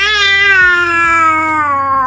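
A baby's one long, drawn-out vocal call, held steady and slowly falling in pitch, then stopping.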